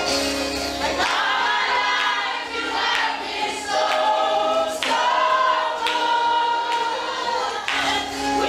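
A congregation singing a gospel worship song together over instrumental backing, with long held notes.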